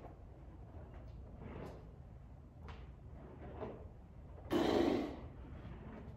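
A man breathing hard while pressing a barbell on an incline bench: a few faint short breaths, then a loud forced exhale about four and a half seconds in.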